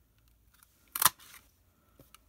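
A handheld 1-1/8-inch scallop circle punch snapping through cardstock once: a single sharp click about a second in.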